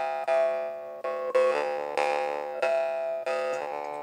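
Handmade drymba (metal jaw harp) being played: about six plucks, each a sharp twang that rings and decays over a steady low drone. The mouth shifts which overtone stands out from pluck to pluck, making a melody.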